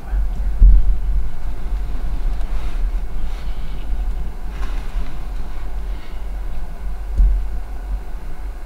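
A steady low rumble, loudest about half a second in and again near the end.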